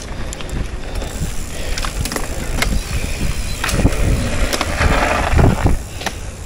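Mountain bike rolling over a dirt trail: tyre noise with scattered rattles and clicks from the bike. Near the end a louder scraping rises as the bike slows, which the rider puts down to something pinched and scraping on the bike.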